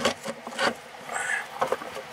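Handling noise: rubber toy frogs being moved about by hand on a wooden tabletop, a few light knocks and rubs.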